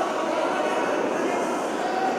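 Steady din of many voices from a crowd of spectators talking and shouting in a large indoor hall.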